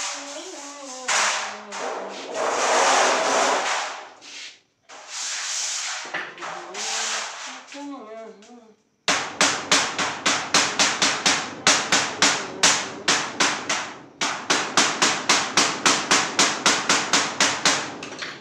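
Hammer striking a sheet-steel cupboard panel in a fast, even run of sharp blows, about three a second, with a brief break near the end. Before the blows start there is a rasping, scraping noise and a man's voice.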